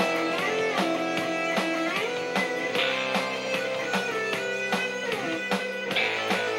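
Electric guitar improvising a single-string melody in C major, with notes sliding up and down the string, sitar-like. It plays over a backing track of sustained chords and a steady drum beat.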